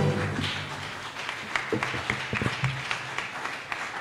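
Audience applauding with light, scattered clapping just after a choir's song ends, with a few brief voices in the room.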